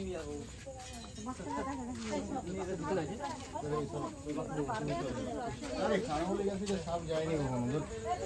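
Several people talking at once in the background, overlapping voices with no single clear speaker.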